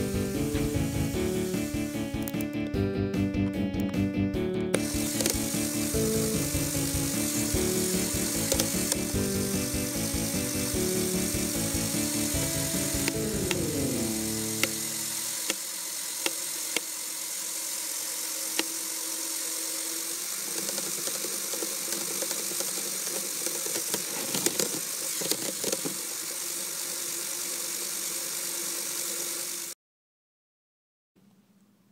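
Background music with a beat, ending about halfway through in a falling pitch slide. Then a Lego Technic motor running steadily, with gears clicking in the car's three-speed automatic transmission. The sound cuts off abruptly just before the end.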